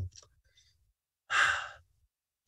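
A man sighs once, a short breathy exhale with no voice in it, about a second and a half in after a pause.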